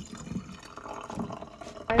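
Brewed tea draining from the bottom valve of a gravity tea steeper into a ceramic mug: a steady trickle of liquid filling the cup.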